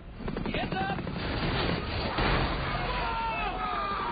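Helicopter rotor and engine noise in a dense action-film effects mix, with a rapid low chop through the first second.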